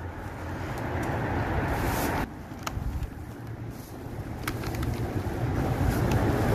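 Street background noise: a steady rumble of traffic that drops abruptly about two seconds in and builds again toward the end, with a few faint clicks.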